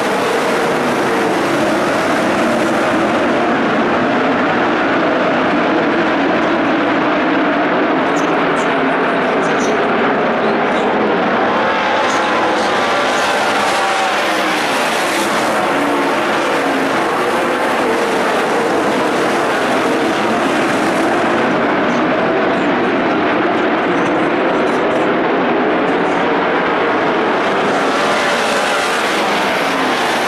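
A field of winged dirt-track sprint cars racing at full throttle, their methanol-burning V8 engines running together in a loud, continuous blend that never drops off.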